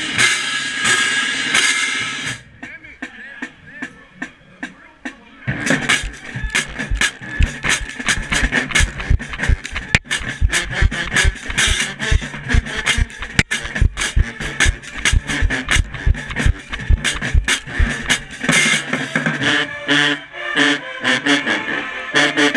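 Marching band playing at full volume: brass over the drumline, with cymbal crashes close by. After a quieter stretch a few seconds in, bass drums and cymbals drive a steady, fast beat under the horns from about five seconds in. Near the end the brass comes forward again.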